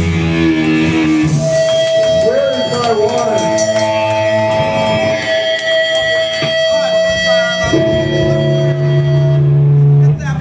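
Live electric guitars ringing out in long sustained notes and amplifier feedback at the close of a hardcore song, with some shouting mixed in; the ringing cuts off suddenly at the end.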